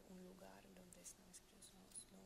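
Soft, hushed speech with faint hissing consonants: an interpreter quietly translating a question for the author.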